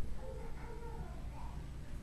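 A faint, high, wavering vocal sound, like a young child in the room, lasting about the first second, over a steady low room hum.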